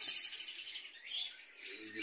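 Budgerigars chirping: a quick run of high chirps, then another burst about a second in.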